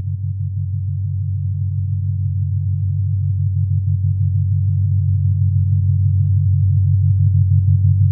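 Electronic music: a low synthesizer drone with a fast, even pulse, growing slowly louder.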